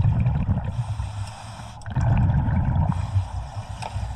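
Scuba diver breathing through a regulator underwater: an even hiss on each inhalation, with a gurgling rumble of exhaled bubbles about two seconds in.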